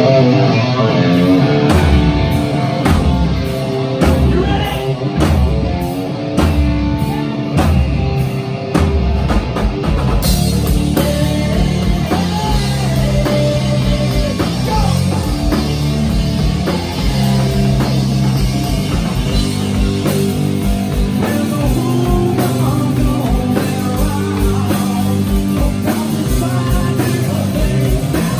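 Hard rock band playing live: electric guitars, bass and drums with a steady kick-drum pulse, and a male lead vocal. The band fills out about ten seconds in.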